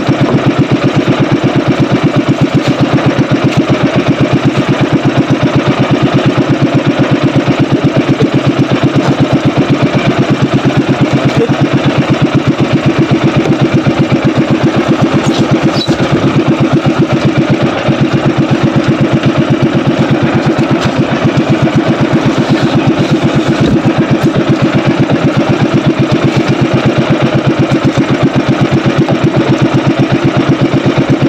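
Small engine of an outrigger fishing boat running steadily at a constant speed, with an even, rapid beat that does not change.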